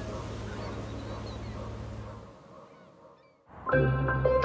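Birds calling over a low steady hum of harbour ambience, fading away a little past halfway. Music with struck, ringing notes comes in just before the end.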